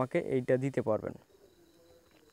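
A man talking for just over a second, then a quiet stretch of faint background tone.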